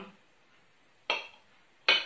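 Knife clinking twice against a ceramic plate while cutting a boiled egg in half; the second clink, near the end, is the louder, each with a brief ring.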